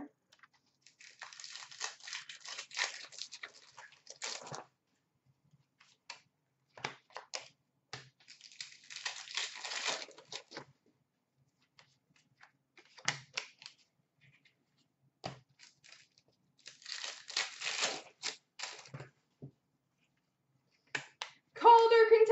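Trading-card packs being handled: three bursts of rustling and tearing of pack wrappers and cards sliding over one another, with scattered light ticks of cards being flicked and dropped in between.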